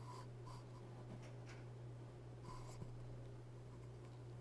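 Faint room tone: a steady low electrical hum, with a few soft, brief rustles.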